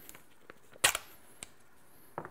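A single short, sharp rip just under a second in, a strip of masking tape torn off the roll, with a few faint clicks of handling around it.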